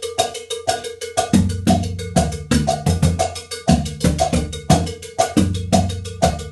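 Three surdo drums and cowbells playing a 12/8 rhythm: deep surdo booms about twice a second over a steady run of quick, sharp cowbell strokes, with a foot-pedal cowbell keeping the pulse.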